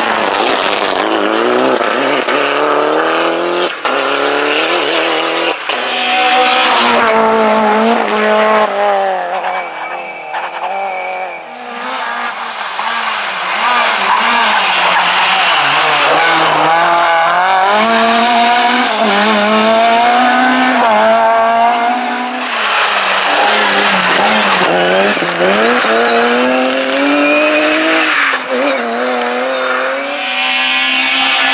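Rally cars driven hard one after another, their engines revving and rising and falling in pitch through gear changes and on and off the throttle, quieter for a moment between cars. A short high squeal comes about ten seconds in.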